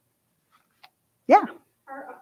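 Over a second of near silence, then one short, loud "yeah" whose pitch rises and falls, followed by a fainter voice beginning a question.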